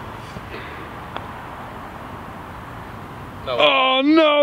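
A putter strikes a golf ball with one faint click about a second in, over steady outdoor background noise. Near the end a man lets out a loud, drawn-out exclamation as the putt stops just short of the hole.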